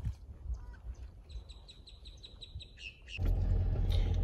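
A bird calling in a rapid run of short high chirps, about eight a second, ending in one lower note. Near the end a steady low rumble from inside a car cabin takes over.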